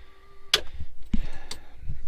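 A cockpit toggle switch clicks about half a second in, and a faint steady electrical whine stops with it, as the aircraft's electrical power is switched off. A few more light knocks and clicks of handling follow.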